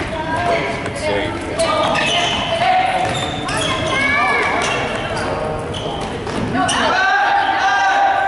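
Basketball game sounds: a ball bouncing on a hardwood court amid players' and spectators' shouts and calls.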